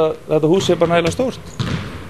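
Basketballs bouncing on a hardwood gym floor, a few sharp bounces in the second half with the hall ringing after them. A man talks over the first half.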